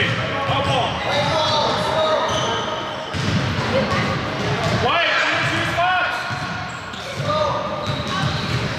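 Basketball bouncing on a hardwood gym floor, with several voices calling out over it in a large, echoing gym.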